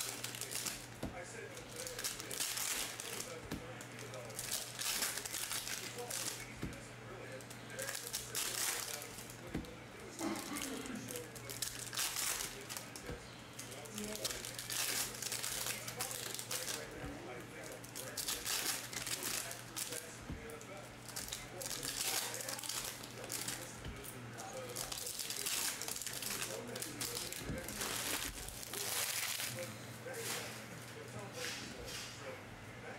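Foil wrappers of Topps Chrome baseball card packs crinkling and tearing as they are ripped open by hand, in bursts every second or two, over a steady low hum.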